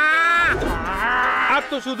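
A cartoon monster's voice-acted battle yell: one long strained cry that turns into a rough, growling shout about half a second in and breaks off after about a second and a half.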